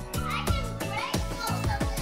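Background music with a steady beat, with young children's voices over it.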